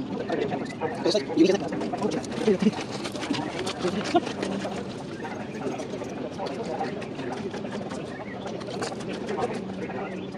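Indistinct conversation of several people standing close by, busiest in the first few seconds.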